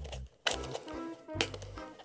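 Quiet background music, with a couple of soft clicks and crinkles from a rubber balloon and condom being worked over a plastic bottle.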